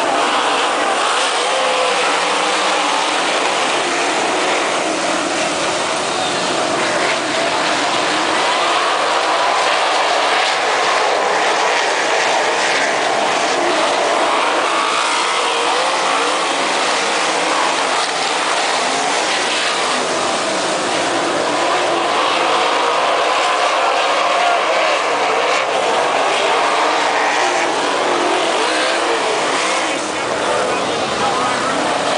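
A field of 360 winged sprint cars racing on a dirt oval, their V8 engines running loud and continuous as the pack circulates, many engine pitches rising and falling over one another.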